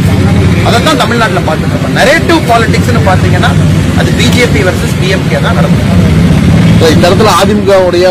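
A man speaking Tamil into a cluster of press microphones, with a steady low hum underneath.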